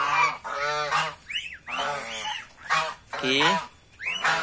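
A flock of domestic geese honking, several birds calling one after another and overlapping, about half a dozen loud honks in a few seconds.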